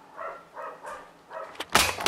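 A few faint, short pitched sounds, then a sharp click and a sudden loud rattling clatter near the end: the camera being knocked and handled.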